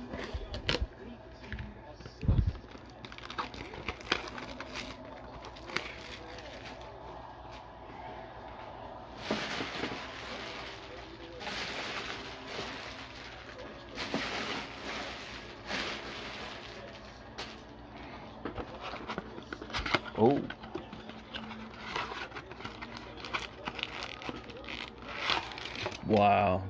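Scissors snipping and cellophane wrap crinkling and tearing as a cardboard trading-card blaster box is unwrapped and opened, with scattered handling clicks and knocks and stretches of rustling. Near the end the cardboard box is torn open.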